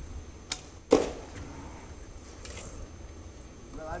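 Homemade PVC-pipe bow being shot: a light click, then the loud, sharp snap of the bowstring's release about a second in.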